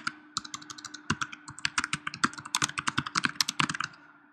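Typing on a computer keyboard: a fast, uneven run of key clicks, several a second, with a brief pause just after the start. A faint steady hum runs underneath.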